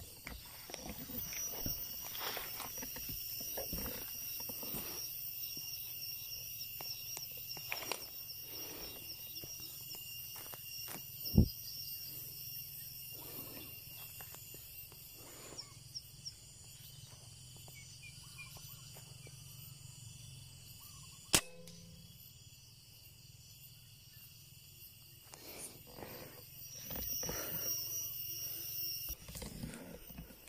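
A PCP air rifle firing a 5.5 mm pellet, one sharp crack about two-thirds of the way through, against a steady high-pitched outdoor drone. Earlier, about a third of the way in, there is a single low thump.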